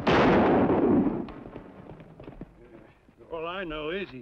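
A sudden loud crash of noise that dies away over about a second. Near the end, a woman sobbing, her voice wavering up and down.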